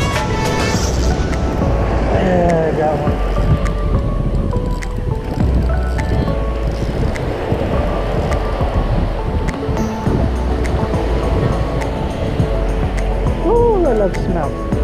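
Wind buffeting the microphone and surf washing up a sand beach, with background music running underneath. A couple of short gliding pitched sounds come through, one a couple of seconds in and one near the end.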